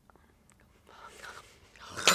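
A woman's faint breathy, whispered vocal sound about a second in, then a louder breath building near the end, as she reacts in disgust to the taste of royal jelly.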